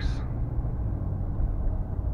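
Ram 1500 pickup driving at about 30 mph, heard from inside the cab as a steady low engine and road rumble. The owner puts part of the exhaust noise down to broken exhaust studs.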